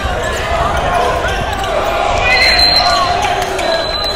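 Indoor basketball game: a ball bouncing on a hardwood gym floor, with indistinct voices of players and spectators echoing in the hall.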